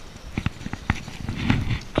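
Footsteps through dry leaf litter and twigs, with several sharp crackles and snaps.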